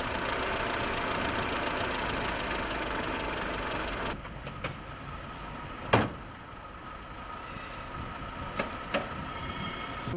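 A 1980 car's LPG-fuelled engine idling steadily, heard close up under the open bonnet with a home-built add-on feeding air into the intake. About four seconds in the engine sound cuts off to a quieter background. A single sharp knock comes about six seconds in, and two small clicks near the end.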